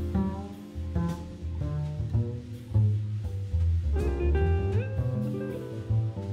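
Small jazz combo playing live: electric guitar lines over piano, upright double bass and a drum kit.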